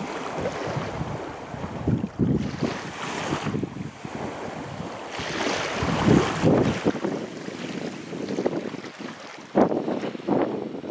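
Wind buffeting the camera microphone in irregular gusts, over the wash of small waves on the shore.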